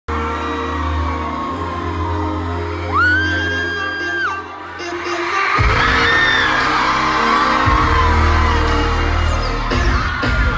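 Loud pop music through a concert hall's PA, with heavy bass that drops out for about a second midway, and a crowd whooping and screaming over it.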